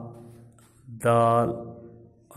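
Speech only: a man's voice slowly sounding out letters in long, drawn-out syllables, one held for about half a second a second in.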